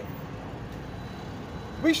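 Steady background noise of road traffic, with no distinct events, before a man's voice starts again near the end.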